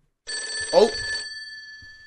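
Telephone bell ringing: one ring of about a second starts a quarter second in, then its tones ring on and fade away.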